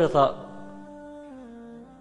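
Soft background music of wordless humming: held notes that step down in pitch twice, after a man's voice breaks off at the start.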